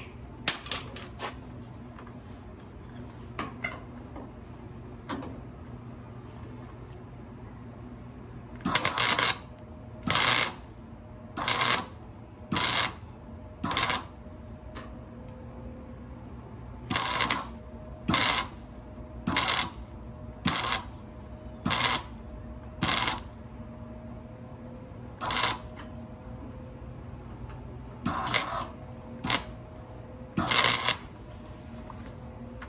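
Flux-core wire welder laying short stitch welds to fill a small hole in sheet steel with a copper backer behind it: about fourteen crackling bursts of a second or less, starting about nine seconds in, with pauses of a second or so between them.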